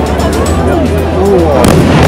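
Aerial firework shells bursting with a run of bangs and crackles, the loudest bang coming late, just before a large white shell opens.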